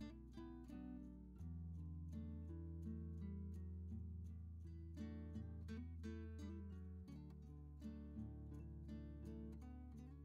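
Quiet background music: acoustic guitar picking a steady run of notes over held low bass notes.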